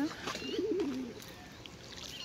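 A pigeon cooing: one short, low, wavering coo that drops in pitch at its end, with a brief high peep just before it.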